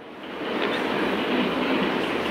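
Steady rushing background noise with no speech in it, growing louder about half a second in.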